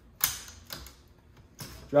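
Hot-swap hard-drive caddy in a Dell PowerEdge R320 front bay being unlatched and drawn out: a sharp click about a quarter second in as the release catch lets go, then a couple of fainter clicks as the sled moves in the bay.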